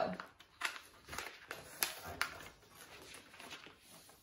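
Sheets of copy paper being folded and creased by hand: soft rustling with a few short, sharp crackles in the first couple of seconds.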